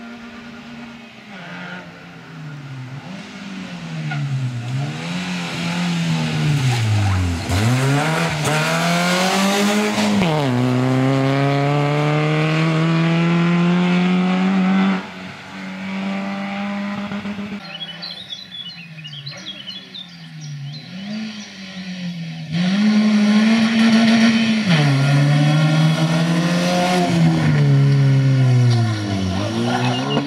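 Peugeot 206 rally car engine revving hard through its gears on a special stage, its pitch climbing and falling again and again as it comes closer and louder. The sound drops off suddenly about halfway through. Then the car is heard on another approach, loud again, revving up and down through the gear changes.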